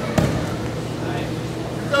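A single thud of a judo competitor's body hitting the mat from a throw, a moment after the start, over the voices of spectators in a large hall.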